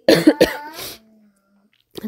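A person gives a short cough lasting under a second, and then the sound cuts to silence.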